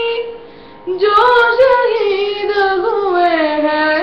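A boy singing a Hindi patriotic song. After a short breath he holds one long, wavering sung line that slides down in pitch toward the end.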